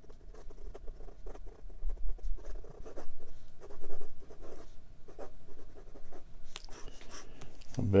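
Flexible 14-karat gold nib of a 1950 Sheaffer Craftsman Touchdown fountain pen scratching across notepad paper in quick, irregular strokes as it writes.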